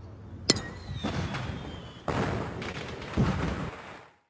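A bat hits a ball once, a sharp crack about half a second in with a brief ring after it. Outdoor rustling noise follows, swelling louder twice.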